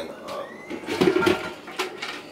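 Plastic supplement tubs and containers handled on a kitchen counter: an irregular clatter and rub of plastic, busiest about a second in, with a sharp knock near the end.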